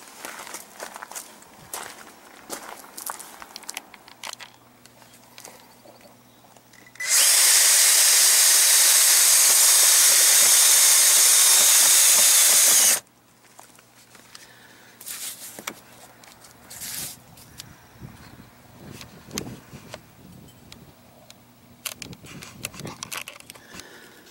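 Cordless drill running at a steady speed for about six seconds, then stopping abruptly, as it drives up into the underside of an RV slide-out floorboard to pull the water-softened board back up to its aluminium rail. Faint handling clicks before and after.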